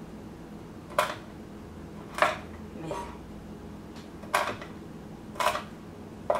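Chef's knife slicing whole almonds on a wooden cutting board, the blade knocking down onto the board four times at uneven intervals of one to two seconds, with a fainter knock between the second and third.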